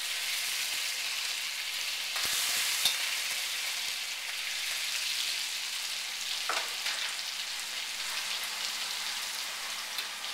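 Minced garlic sizzling in hot olive oil in a wok, a steady high hiss. A few short clicks come from the stirring, about two, three and six and a half seconds in.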